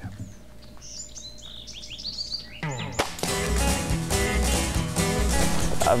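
Small birds chirping in quick falling notes over faint woodland ambience. About halfway in, a sharp hit opens music with a steady beat, which grows louder.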